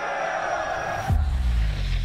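War-film trailer soundtrack: held, sustained music, then a sudden deep boom about a second in that rumbles on with a falling low tone.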